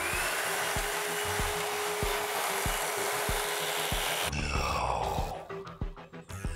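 Upright vacuum cleaner switched on: the motor whines up in pitch and settles into a loud, steady rushing hiss. It is switched off a little after four seconds in and winds down with a falling whine, over a regular low musical beat.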